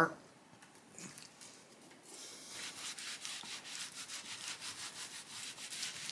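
Cloth rag rubbing back and forth along an unfinished wooden guitar neck, wiping on potassium silicate. Brisk, rapid rubbing strokes begin about two seconds in and keep going.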